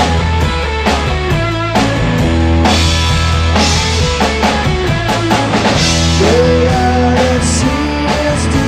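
A rock band playing: guitar, bass guitar and drum kit.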